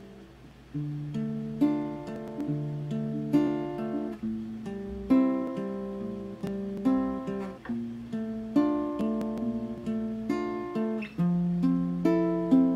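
Acoustic guitar played solo without singing: chords in a steady repeating pattern, each note ringing and fading. The playing picks up again about a second in, after a chord has been left to die away.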